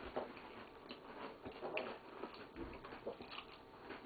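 Faint chewing and scattered small mouth clicks from people eating Oreo cookies.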